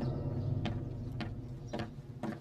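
Footsteps climbing stairs, about one step every half second, while low music fades out.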